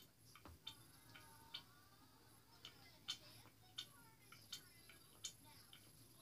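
Faint, scattered light clicks and taps from a plastic baby doll being handled as it is pretend-fed, several of them about three-quarters of a second apart, over an otherwise near-silent room.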